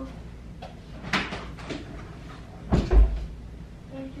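Household door knocks: a sharp clack about a second in, then a louder, deeper thump near three seconds in, as a door or cupboard door is shut.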